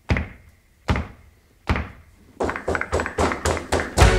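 Intro sound effect of heavy, echoing thunks spaced a little under a second apart, which quicken about two and a half seconds in into a fast run of about five or six hits a second.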